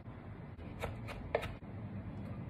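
Three light clicks of a kitchen knife on a wooden cutting board as pitted black olives are sliced, over a faint room hum.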